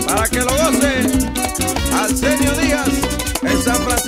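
Bachata band playing: a lead guitar line over bass, drums and the steady scrape of a güira.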